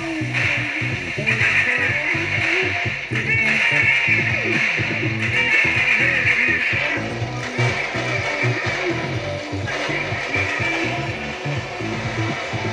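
Pop music playing from an FM radio broadcast, with a steady beat.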